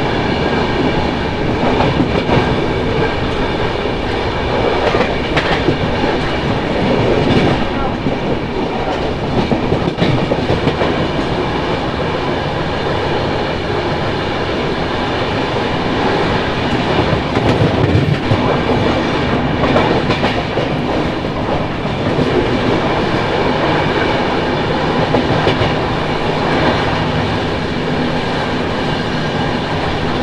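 Passenger express train running, heard from an open coach door: a continuous rumble of wheels on the rails, with irregular clicks over rail joints and points and a steady high whine over it.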